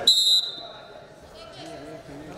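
A referee's whistle gives one short, sharp blast right at the start, stopping the wrestling, and echoes briefly in the hall. Voices from the crowd follow.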